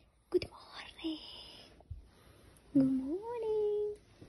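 A person's voice: faint whispering, then about three seconds in a drawn-out hum that rises in pitch and holds for about a second.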